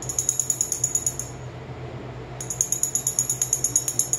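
A small metal handbell held in a Moluccan cockatoo's beak, tapped rapidly and ringing at about eight strokes a second. There are two runs: one at the start lasting just over a second, and a longer one starting about two and a half seconds in.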